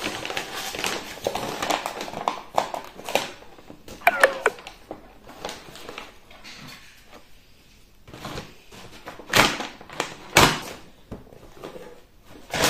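Brown paper mailer bag being torn open and crumpled by hand, with crackling rustles. A brief squeak falls in pitch about four seconds in, and two loud rustling rips come near the end, about a second apart.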